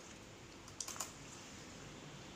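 A few faint ticks about a second in as an embroidery needle and thread are worked through cotton cloth by hand, over low room hiss.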